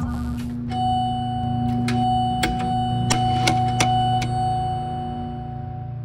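Background electronic music: a steady low synth drone with a held higher tone, and a scatter of short bell-like ticks in the middle.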